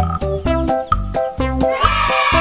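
Upbeat background music: a bouncy stepped-note melody over a bass line and a steady clicking beat. A higher, wavering sustained sound comes in near the end.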